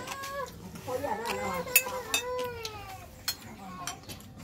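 A cat meowing: a short call, then a longer drawn-out one that falls in pitch at its end. A few light clinks of metal spoons on china dishes.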